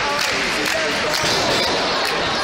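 Voices shouting in a hall, with repeated thuds of wrestlers moving and landing on the ring canvas.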